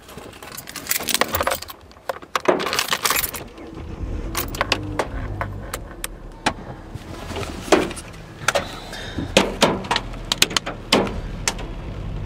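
Car keys jangling and clinking in a hurried fumble: many sharp, irregular clicks and rattles. A low steady hum sets in about four seconds in.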